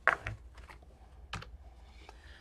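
Two sharp clicks of computer keys, the first at the very start and the second about a second and a half later, over low room tone.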